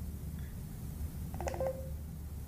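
Short electronic start-up tone from a Garmin nuvi 255W GPS navigator just after being switched on: a brief cluster of beep-like notes about a second and a half in, ending in a short held note, over a low steady room hum.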